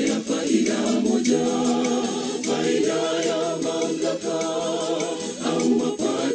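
Choir singing a Swahili gospel song in harmony, with long held, wavering notes.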